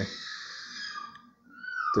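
A man's voice trailing off a hesitant "é..." into a breathy exhale that fades over about a second, then a short pause before his speech starts again near the end.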